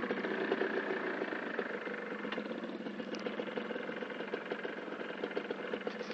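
A small motorcycle engine running steadily at idle, a fast, even rough pulsing.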